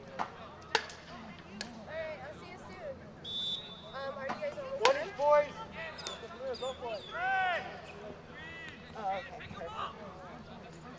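Outdoor soccer match sound: players shouting to each other across the field, with a few sharp thumps of a ball being kicked, the loudest about five seconds in, and a short high whistle a little past three seconds.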